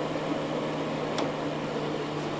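Vintage fan-forced electric space heater running on its 1500-watt high setting: a steady fan whoosh with a low motor hum, the fan turning a little slower on this setting. A light click about a second in.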